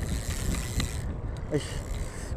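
Spinning reel being cranked to bring in a hooked fish, a steady low mechanical whirr with faint ticks. A man's short "Ay" near the end.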